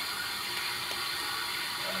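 Penberthy Model 328AA live-steam injector running steadily, a continuous even hiss as it draws water from a bucket and forces it into the boiler.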